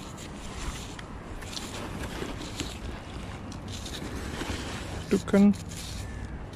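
Steady wind rumble on the microphone with the sea in the background, and light scrapes and rustles of gloved hands and clothing; a man says "okay" near the end.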